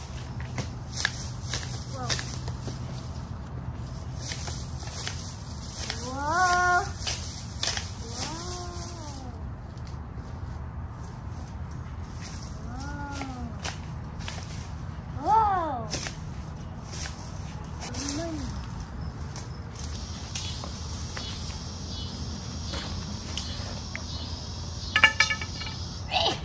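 Long-handled garden shears snipping through tall grass and weeds, heard as scattered faint clicks, while a voice calls out short wordless sounds about five times.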